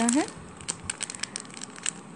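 Clear plastic packaging bag crinkling as it is handled in the hands: an irregular run of sharp, papery crackles.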